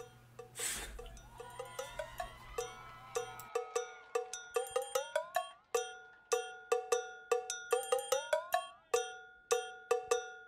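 Instrumental break of an improvised electronic funk track: short, bright, pitched electronic percussion hits repeat in a quickening rhythm. Rising synth glides sweep up twice. A low bass note drops out about a third of the way in.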